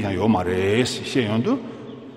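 A man's voice speaking, drawing out one syllable at a steady pitch before a short final phrase, then falling quiet near the end.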